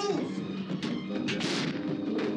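Horror film soundtrack: a tense, sustained score with a cluster of loud bangs and crashes about a second in.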